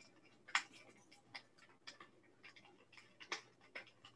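Faint, irregular crackling and popping of a brush fire burning a tree and dry grass, several sharp pops a second, the loudest about half a second in and again past the three-second mark.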